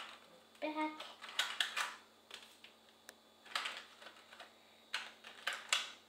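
Small cardboard toy box being opened by hand: irregular clicks and crinkles of card and packaging, in short clusters.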